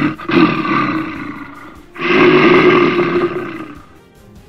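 Cartoon bear sound effect: two long roars, each about two seconds, the second starting about two seconds in and fading out near the end.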